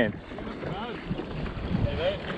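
Wind buffeting the microphone over the wash of choppy water against a small drifting boat, with a faint distant voice calling back.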